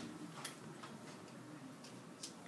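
Faint, irregularly spaced taps and clicks of a stylus on a writing screen as a word is handwritten, over quiet room tone.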